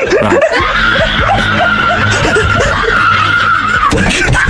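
Snickering, giggling laughter in quick short pulses, with a long steady high-pitched squeal held over it that drops away just before the end.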